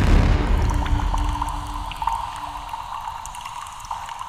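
Intro sound effect: a low boom fading slowly away, with a faint held tone over it.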